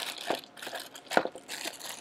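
Clear plastic packaging bag crinkling as hands pull a bagged power cord from its box, an irregular rustle with a few sharper crackles.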